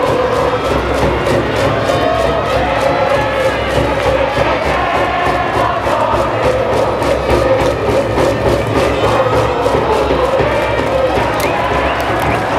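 A high school baseball cheering section's brass band plays a cheer song while the massed students chant along over a steady beat.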